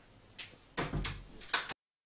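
Wooden interior door being opened: a latch click, a heavier knock as the door moves, then another sharp click from the handle. The sound then cuts off suddenly.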